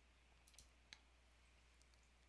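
Near silence with a few faint computer mouse clicks, about half a second and about a second in.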